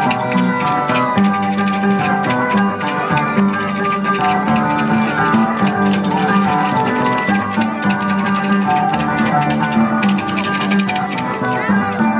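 Andean folk dance music: melodic instruments with some notes sliding in pitch, over a steady, busy percussion beat.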